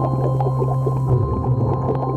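Underwater recording: a steady low mechanical drone carried through the water, with a few fainter steady tones above it and scattered faint clicks.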